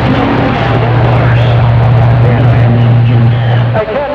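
CB radio receiving a distant skip transmission: loud static-laden audio with a steady low hum and faint garbled voices underneath, the hum cutting off shortly before the end.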